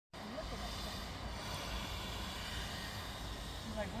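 Steady outdoor background noise with a fluctuating low rumble and a faint hiss, and a short spoken word near the end.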